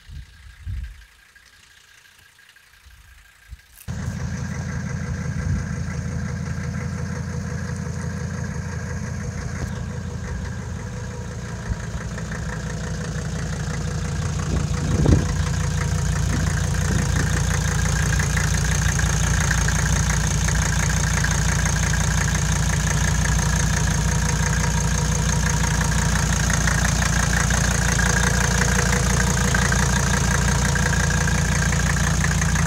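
Mercedes-Benz 300D five-cylinder turbo diesel running at idle. It comes in suddenly about four seconds in, after a quieter stretch with a few light thumps, and runs steadily after that. It grows a little louder after about twelve seconds, with one short knock in the middle.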